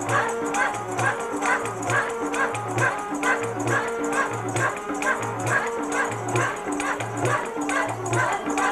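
Live singing over a steady drum beat, about two beats a second, with a held melodic accompaniment that steps between notes.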